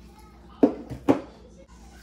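Two sharp knocks about half a second apart, from a blender jar and a raw turkey being handled on a kitchen counter.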